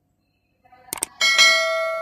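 Subscribe-button animation sound effect: a quick double mouse click about a second in, then a bell notification chime that rings out and slowly fades.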